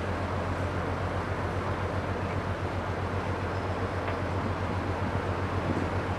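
Steady low drone of the cruise ship Seven Seas Voyager's machinery as the ship manoeuvres in close to the quay, unchanging throughout.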